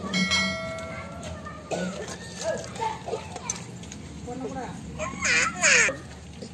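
A short bell-like chime rings for about a second at the start, the sound effect of a subscribe-button animation. Then voices of children and adults chatter in the background, louder near the end.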